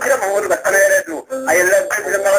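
A man's voice chanting a melodic line in held, wavering notes, with short breaks between phrases.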